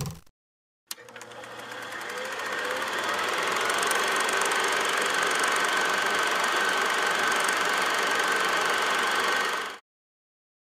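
A steady mechanical running noise with a rattle, like a motor-driven machine. It fades in over about three seconds, holds level and cuts off abruptly near the end.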